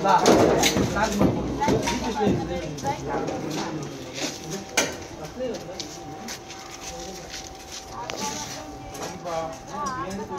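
People talking, with a few sharp knocks and clicks mixed in; the talk is loudest in the first couple of seconds. A faint steady tone comes in about four seconds in and holds.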